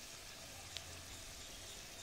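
Thick tamarind gravy simmering in a kadai, a faint steady sizzle of bubbling at the pan's edges, with one small tick about three-quarters of a second in.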